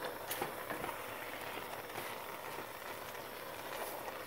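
Pot of spinach stew simmering on the stove: a steady, even bubbling hiss with a few faint ticks.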